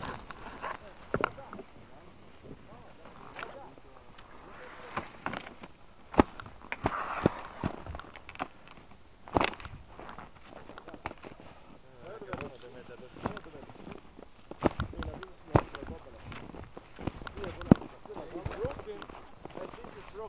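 Faint muffled voices now and then, among scattered sharp knocks and clicks.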